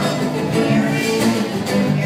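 Several acoustic guitars played together live, a run of plucked notes and chords.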